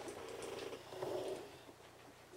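Quiet meeting-room tone with faint, indistinct voices that fade out about one and a half seconds in.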